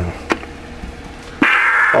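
Low hiss and a faint steady hum, with a single click about a third of a second in. About 1.4 s in, a strong pitched, buzzy voice sound starts: the start of a CB radio's single-sideband transmission of a spoken audio check.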